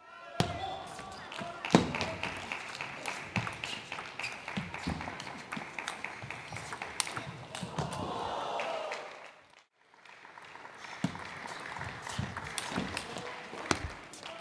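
Table tennis rallies: a celluloid ball clicking sharply off rackets and the table in an irregular run of hits, with voices in the hall behind. The sound breaks off briefly about two-thirds through, and a second rally follows.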